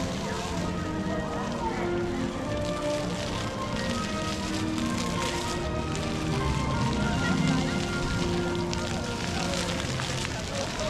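Music of long held notes playing over a busy outdoor ambience of distant voices and the steady splashing of small ground fountain jets.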